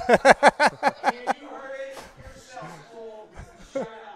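A man laughing heartily in a quick run of about seven 'ha's over the first second or so, followed by quieter muffled talk and chuckling.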